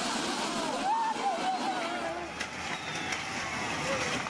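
People shouting, their voices rising and falling in pitch through the first two seconds, over a steady rushing noise. A couple of sharp knocks come later.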